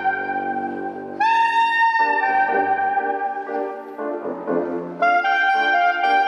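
Soprano saxophone playing a slow melody of long held notes. A new note comes in a little over a second in, and the playing softens around four seconds before the next phrase begins at about five seconds.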